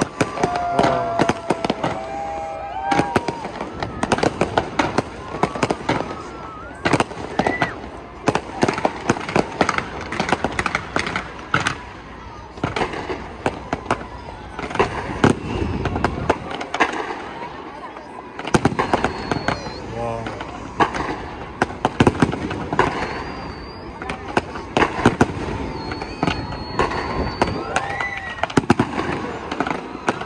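Aerial fireworks going off in a rapid, continuous run of sharp bangs and crackles.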